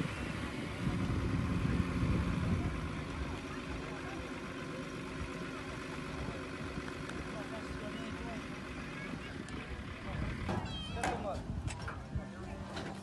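Indistinct voices over a steady background noise, with a brief burst of livelier voice sounds near the end.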